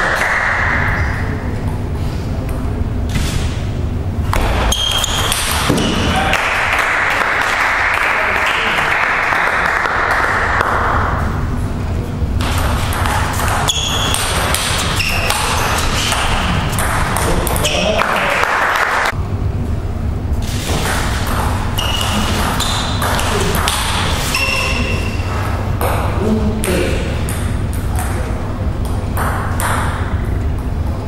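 Table tennis rallies: the celluloid ball clicking off rubber-faced rackets and the table in quick, irregular runs of short sharp knocks, with pauses between points.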